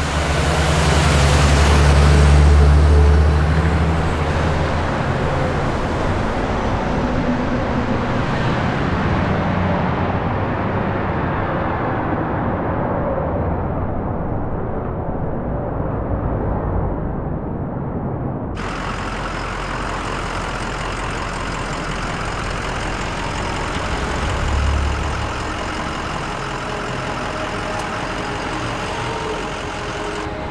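Road traffic noise with a heavy vehicle rumbling close by at the start. The sound then grows steadily duller as its treble fades away, until full, bright traffic noise cuts back in suddenly about eighteen seconds in. Another low vehicle rumble swells and passes briefly near twenty-five seconds.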